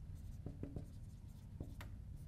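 Dry-erase marker writing on a whiteboard: a series of short, faint strokes of the tip on the board, three close together about half a second in and two more near the end.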